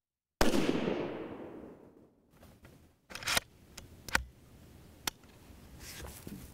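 A single rifle shot from a scoped bolt-action rifle fired from prone, its report dying away over about a second and a half. A few short, sharp clicks follow.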